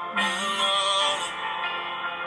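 A male singer's slow R&B cover song with backing music, played through a smartphone's speaker held up to the microphone. The sound turns fuller and brighter just after it begins.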